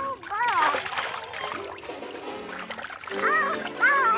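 A cartoon duckling's quacking voice, in two short bursts near the start and about three seconds in, with a splash of water between them, over music.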